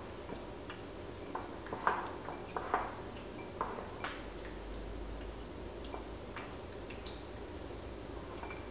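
A spatula stirring thick peanut sauce in a glass bowl: light, irregular taps and scrapes against the glass, roughly one or two a second, over a low steady room hum.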